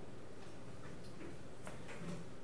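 A few faint, irregularly spaced small clicks or ticks over a steady background hiss.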